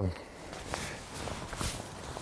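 A few soft footsteps on grass, about one a second, over quiet outdoor ambience.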